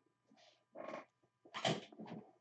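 A few short rustling, scuffing noises of someone rummaging through things while looking for card sleeves, three in about two seconds, the last one the loudest.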